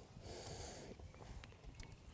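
Faint, quiet background with a few soft ticks.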